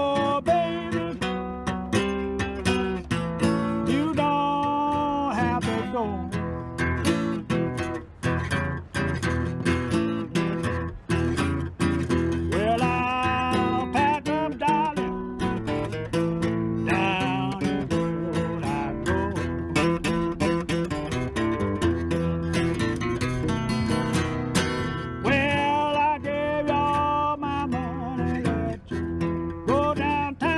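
Acoustic guitar picked in a lilting Piedmont blues style, with a harmonica played from a neck rack over it in held, bent notes that come and go in short phrases.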